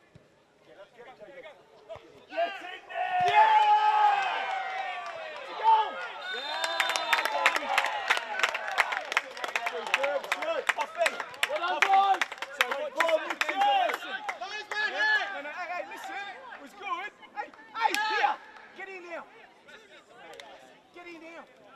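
Many voices shouting and cheering after a goal in a football match, loudest in the first few seconds, with a stretch of hand clapping through the middle.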